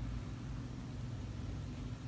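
A faint, steady low hum with a light hiss and no distinct events: the background noise of the recording.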